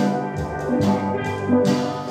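Steel pan ensemble playing a tune, the pans struck with rubber-tipped sticks in an even beat, each note ringing on, with deep bass pan notes underneath.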